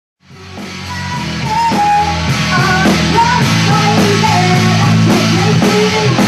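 Live rock band playing loud: electric guitar, bass guitar and drums, with a woman singing. The sound fades in over about the first second.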